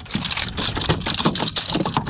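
Bluefish flopping on a fiberglass boat deck with a popper lure hooked in its mouth: a quick run of irregular slaps and knocks.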